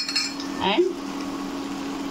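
A single short metallic clink of a utensil against a pan right at the start as fried cashews and raisins are tipped in, over a steady low hum.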